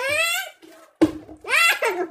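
People laughing and exclaiming: a high-pitched squealing laugh that rises and falls in pitch, then, about a second in, a sudden loud burst of laughter and excited voice.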